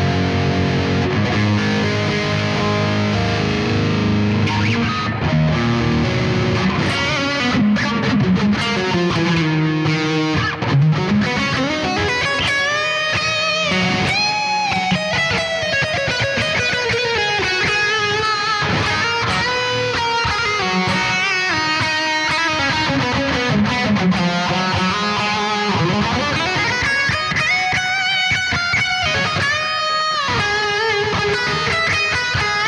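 2007 Gibson Flying V electric guitar played through a Bogren AmpKnob RevC amp simulator for a heavy metal tone. Held low chords ring for the first several seconds, then a lead line with notes bent up and down in pitch runs to the end.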